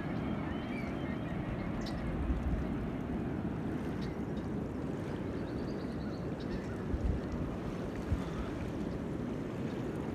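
Small waves lapping against a rocky river shore: a steady wash of water noise. A few low bumps hit the microphone about seven and eight seconds in.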